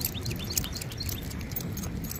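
Outdoor ambience: a steady low rumble of wind on the microphone, with a few short bird chirps in the first half second.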